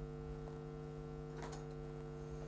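Steady low electrical hum made of several held tones, with a faint tick about one and a half seconds in.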